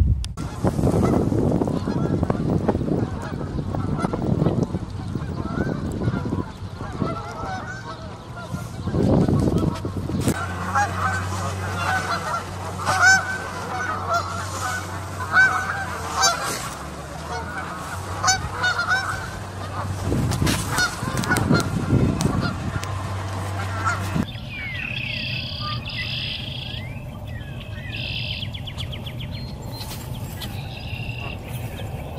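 A flock of Canada geese honking, many calls overlapping, through the middle of the stretch. Before it there is a gusty low rumble. After an abrupt change near the end, small birds chirp high and quietly.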